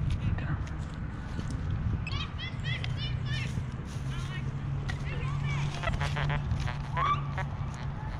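Birds calling: a quick run of rising chirps about two seconds in, then a few more calls later, over a low steady hum.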